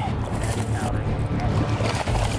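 Water splashing as a hooked largemouth bass thrashes at the surface beside the boat and is grabbed by hand, over a steady low hum.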